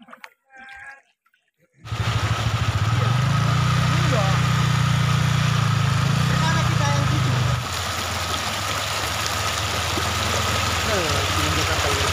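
A small motorcycle engine running in floodwater, with a steady rush of water noise and faint voices. It starts suddenly about two seconds in after a faint opening, and drops a little in level past halfway.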